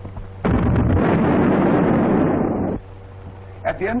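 A 14-inch battleship main gun firing: one sudden heavy blast about half a second in, its rumble running on for about two seconds before cutting off abruptly.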